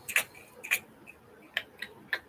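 Four short, sharp clicks at uneven intervals, the first two the loudest.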